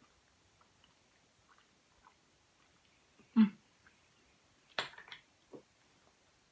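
Quiet eating sounds: faint mouth and spoon clicks as a spoonful of soft pineapple and marshmallow fridge tart is eaten, a short vocal sound from the eater about three and a half seconds in, and a few louder mouth smacks a little later.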